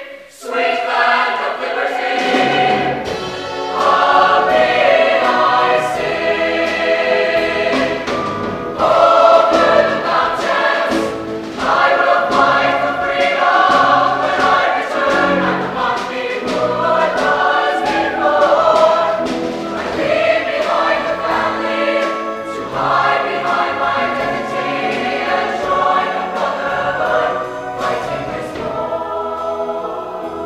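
Mixed show choir of female and male voices singing together in full harmony. The singing breaks off for a moment right at the start, then carries on with a brief dip about nine seconds in.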